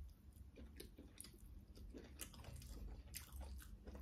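A person chewing a mouthful of rice eaten by hand, faint, with many small wet clicks and smacks.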